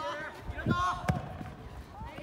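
Players' voices calling out, with a soccer ball struck sharply by a kick about a second in and a softer thud just before it.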